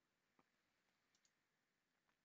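Near silence: room tone with a few very faint clicks.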